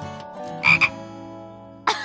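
Cartoon frog-croak sound effect, the gag for a singer with a frog in her throat: one long, steady croak with a sharper burst about half a second in, stopping just before two seconds.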